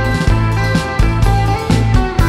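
Instrumental band playing live: a steady bass line under melodic lines, with hand-played congas keeping a regular beat.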